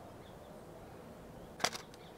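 Canon R7 shutter firing once: a brief sharp click about one and a half seconds in, over faint steady background.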